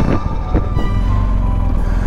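Motorcycle engine running at low road speed, heard as a steady low rumble, with background music over it.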